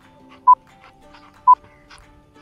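Countdown timer sound effect: two short, high beeps a second apart over soft background music.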